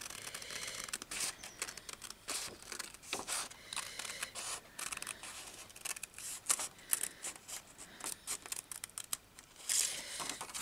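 A sheet of patterned paper being handled, with irregular rustles and crackles of the paper throughout.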